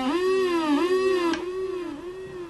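SE-2 reggae dub siren machine (a 'pyun-pyun' siren box) sounding a buzzy electronic tone that swoops up and down in repeated arcs, about two a second, growing quieter toward the end.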